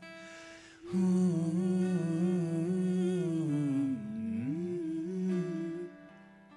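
A singer hums a wordless, wavering melody into a microphone over an acoustic guitar, in an improvised jugalbandi duet. The voice comes in about a second in, swoops down low near the four-second mark, rises again, and fades just before the end.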